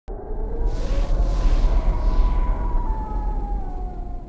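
Cinematic horror intro sting: a heavy low rumble under a whooshing swell, with eerie sustained tones that slowly slide downward and fade near the end.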